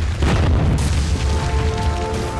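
Deep boom and crash of a wall bursting apart, a designed intro sound effect. It comes suddenly a quarter second in over a low rumble. Sustained music notes come in about a second and a half in.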